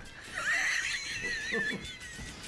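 A high, horse-like whinny that sweeps up and then trembles for about a second and a half.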